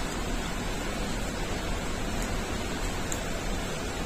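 Steady, even hiss of background noise, with a few faint clicks.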